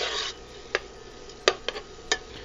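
Metal spoon stirring barley grains toasting in butter in a stainless steel pot: a short rasping scrape at the start, then a few light clicks of the spoon and grains against the pot.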